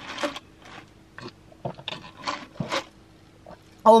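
Ice shifting and crunching in a plastic cup of iced drink as it is tipped up and gulped, in several short crackles over about three seconds.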